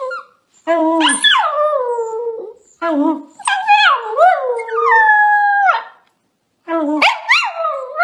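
Chihuahua howling: three long howls with short pauses between them, the pitch rising and sliding down within each.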